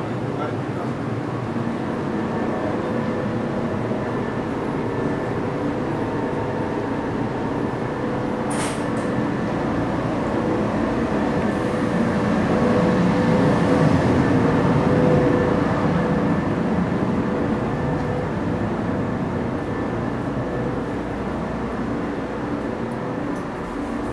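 Steady hum of a JR East 113 series electric train standing at a platform with its doors open, carrying a few faint steady tones and growing louder in the middle. There is one sharp click about eight and a half seconds in.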